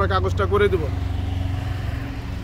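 A vehicle engine running steadily at idle, a low pulsing drone, which is left on its own after a man's voice stops about a second in.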